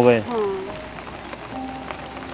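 Speech ending on a word, a brief falling voiced sound, then a quieter stretch of steady hiss with faint music under it.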